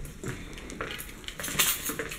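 Light metallic clinking and jingling of small metal objects, with a brighter, louder jingle about three quarters of the way through.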